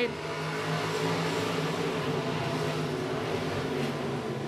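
A pack of IMCA stock cars' V8 engines running at speed around a dirt oval, a steady blended drone with no single car standing out.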